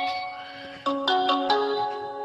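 A phone ringtone melody in marimba-like tones: a chord struck at the start that fades away, then a quick run of four notes about one to one and a half seconds in.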